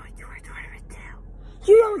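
Whispering, then a girl saying "Don't" aloud near the end.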